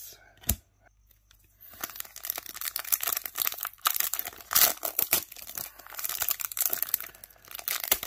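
Plastic wrapper of a 2022 Select Footy Stars trading card pack crinkling and tearing as it is pulled open by hand. The sound starts about two seconds in and goes on in irregular bursts. The wrapper is stiff and awkward to open.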